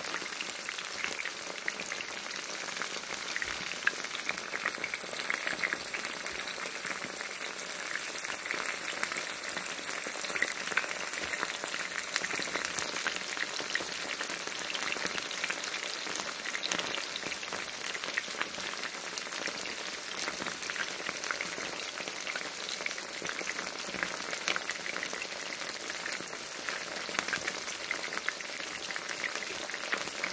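Chicken thigh pieces coated in flour and cornstarch frying in hot coconut oil in a skillet: a steady sizzle with many scattered crackles and pops.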